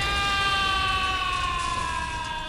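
A long cartoon-style whine with several overtones, held steady and sliding slowly down in pitch: a sound effect on the animated show's soundtrack.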